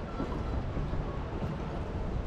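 Steady low rumble of wind on the microphone, with water lapping against the hull of an outrigger canoe sitting at rest.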